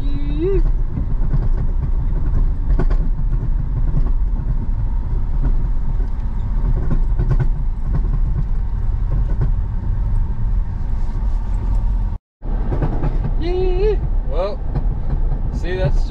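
Steady low rumble of road and engine noise inside a moving car's cabin. The sound drops out for a moment about twelve seconds in, and short snatches of voice come through near the start and after that break.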